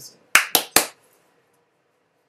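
Three quick, sharp hand claps, each about a quarter second apart, all within the first second.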